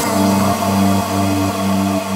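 Electronic music with held low synth notes and no drum beat.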